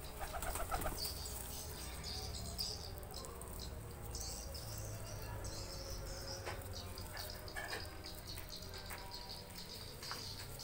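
Pigeons, fantails among them, flapping their wings in a short flurry about a second in, then faint fluttering and cooing. High chirping of small birds runs in the background.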